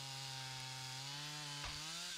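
Chainsaw running steadily under load, cutting through the base of a standing conifer to fell it. The engine note rises slightly near the end as the cut goes through.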